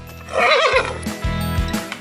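A recorded horse whinny, the lifelike animal sound the Tiptoi reading pen plays for a horse figure, wavering in pitch for about half a second, followed about a second in by a few clip-clop hoofbeats, over light background music.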